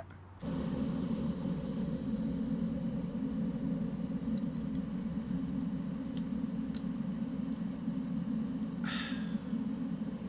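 Steady low rumble of a car heard from inside its cabin, with a few faint clicks midway.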